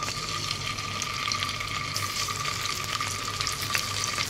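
Marinated soya chaap pieces sizzling as they are set one by one into hot oil and butter in a non-stick pan, a steady hiss with scattered crackles. A thin steady tone runs underneath.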